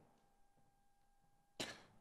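Near silence: studio room tone with a faint steady hum, broken near the end by one short, soft noise just before speech resumes.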